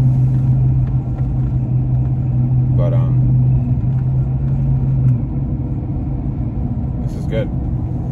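Car cabin noise while driving: a steady low drone with road rumble beneath it, the drone dropping away about five seconds in while the rumble continues.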